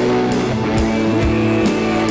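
Live worship band playing a rock-style song with guitar, bass and drum kit, an instrumental stretch between sung lines.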